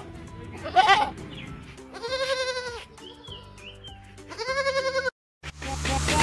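A goat bleating: one short, wavering bleat about a second in, then two longer wavering bleats about two and four and a half seconds in. Music comes in near the end.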